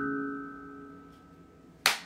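Handpan note with several steady overtones ringing and fading away, then one sharp clap of the hands near the end.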